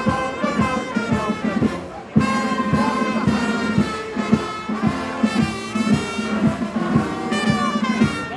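Street brass band playing, with trumpets and trombones over a steady drum beat. The music drops briefly about two seconds in, then comes back in louder.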